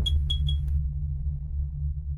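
Logo-intro sound effect: a deep low drone slowly fading, with three quick high pings right at the start.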